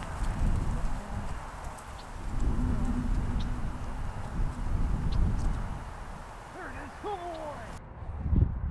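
Wind rumbling and buffeting on the microphone, rising and falling in strength, with a few short gliding calls about seven seconds in.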